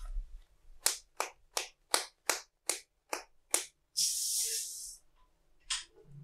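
Eight sharp percussive strikes in an even rhythm, about three a second. They are followed by a burst of hiss lasting about a second and one more sharp strike near the end.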